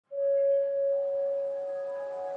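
Background music begins: a sustained bell-like tone, with further higher tones joining about a second in and holding steady.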